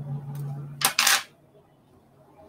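A low steady hum, then two quick sharp snips of small fly-tying scissors cutting hackle fibres about a second in.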